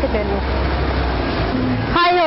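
Road traffic: a steady low rumble with an even hiss, the sound of a vehicle running on a wet street.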